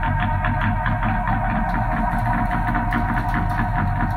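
Improvised experimental band music: sustained droning tones over a low bass drone, with a busy run of quick percussive hits.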